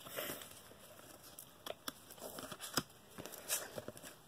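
Faint rustling and scattered light clicks of a stack of cardboard baseball cards being slid apart and flipped through by hand.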